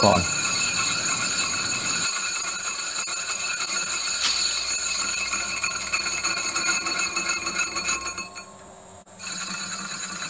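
Metal lathe running with an aluminium pulley spinning in the four-jaw chuck while the tool takes a facing cut across its lower face: a steady machine whine with light metallic ringing. The higher whine briefly cuts out near the end.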